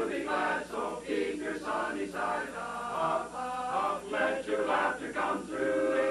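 Men's barbershop chorus singing a cappella in close four-part harmony, the chords moving from note to note without a break.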